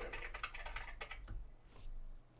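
Typing on a laptop keyboard: quick runs of key clicks for about the first second, thinning to a few scattered keystrokes.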